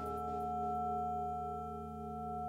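The sustained ringing hum of a large bell: several steady tones together, swelling slightly and then fading a little.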